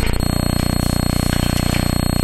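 A loud, steady electric buzz with a rapid, even rattling pulse, becoming steadier a fraction of a second in.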